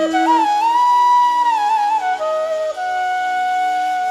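A flute playing a slow melody of long held notes that slide between pitches, over a sustained accompaniment, as an instrumental interlude in a devotional song.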